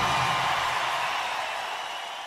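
A steady hiss-like noise with no clear tones, fading out steadily as the recording ends.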